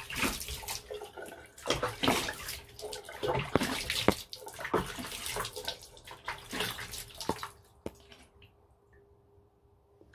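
Water running from a bathroom sink tap, with irregular splashing as hands scoop water onto the face to rinse off a clay face mask. The splashing dies away about two seconds before the end, leaving only a faint steady tone.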